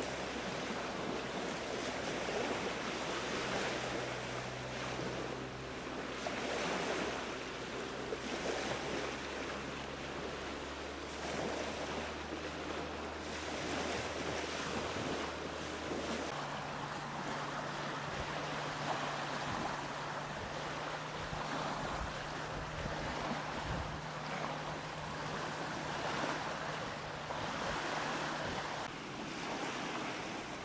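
Small waves lapping on a river shore, with wind buffeting the microphone. A low steady drone lies underneath and changes pitch about halfway through.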